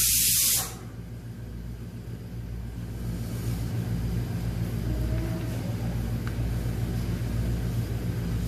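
A loud hiss that cuts off suddenly about half a second in, followed by a steady low hum that slowly grows louder.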